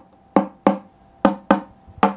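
Acoustic phin (Isan Thai lute) picked in four single notes, in two quick pairs about a second apart, each note ringing briefly and fading.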